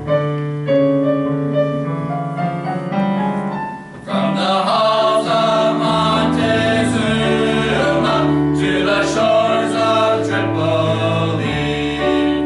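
Small male vocal ensemble singing in parts with piano accompaniment. The music swells fuller and louder about four seconds in.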